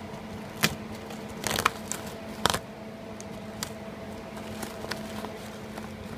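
Steady low hum with a handful of short light clicks and crackles, the loudest about half a second, a second and a half, and two and a half seconds in, from a hand handling and prodding near the microphone.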